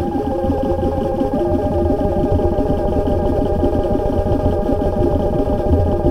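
Abstract electronic techno: a dense, fast-stuttering rhythmic texture over a low rumble, with a held tone above it. A second, lower held tone joins about a second and a half in.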